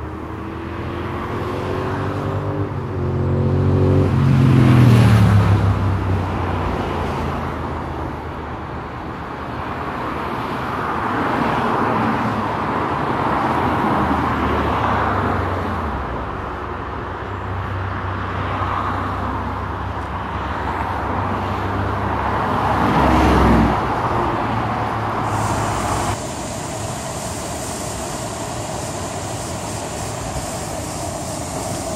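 A car driving on a rough gravel road, with engine and tyre rumble heard from inside the car. The engine pitch falls twice, a few seconds in and again about three-quarters of the way through, as it slows. About 26 seconds in the sound cuts to the steady rush of a waterfall.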